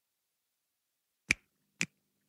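Silence, then finger snaps beginning just past a second in, two snaps about half a second apart, setting the tempo at the start of the song.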